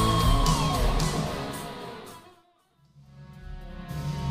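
Loud rock music with electric guitar, one guitar note sliding down in pitch in the first second. The music fades out to a moment of silence about two and a half seconds in, then music fades back in.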